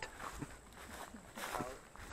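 Footsteps walking through grass, with a faint voice briefly in the middle.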